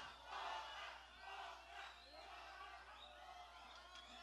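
Faint, indistinct voices of a live concert audience calling out.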